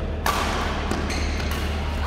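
A badminton racket strikes a shuttlecock about a quarter second in, a sudden hit that echoes in the indoor hall over a steady low hum.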